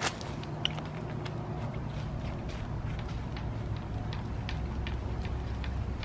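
A steady low hum, with scattered small clicks and ticks as a garden hose is handled and fitted onto a plastic multi-way hose splitter on a standpipe spigot.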